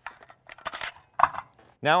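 Rifles being handled on a shooting bench: an AR-15 set down and another lifted onto the rest, with several short metal clinks and knocks and a louder clink a little past a second in.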